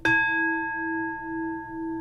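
A meditation bowl bell (singing bowl) struck once and left to ring, its tone wavering with a slow beat as it fades, sounded to open the dharma talk.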